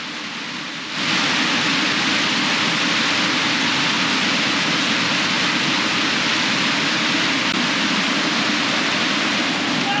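Glacial meltwater stream rushing hard over boulders: a steady, loud torrent that gets louder about a second in.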